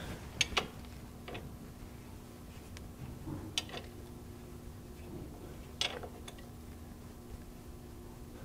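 A few light metallic clicks of a combination wrench on a Porsche 356 transaxle drain plug as it is gently snugged down, spread out over several seconds with a steady faint hum underneath. The plug is only lightly tightened because its threads are chewed up.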